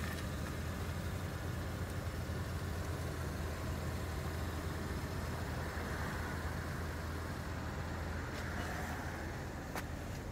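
2018 GMC Acadia's engine idling, a steady low hum. A single sharp click near the end.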